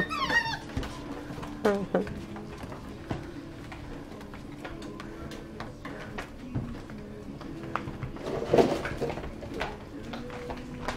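Golden retriever puppies whimpering and grunting while they nurse and tussle, with scattered scuffles and light knocks of paws and bodies on the mat.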